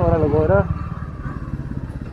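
Royal Enfield Bullet single-cylinder motorcycle engine running on the road, its low firing beat steady and even. A few spoken words come over it at the start.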